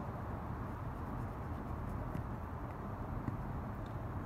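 Quiet, steady background hum and hiss with no distinct sound events.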